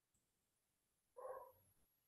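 Near silence, broken a little over a second in by one brief, faint animal call from a house pet.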